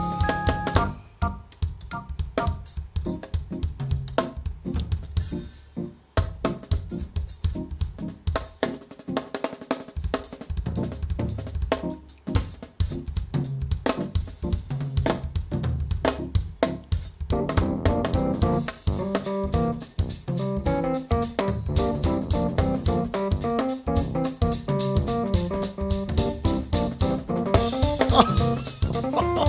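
Drum kit played solo with fast strokes on snare, toms, bass drum and Zildjian cymbals. About seventeen seconds in, pitched keyboard notes join the drums.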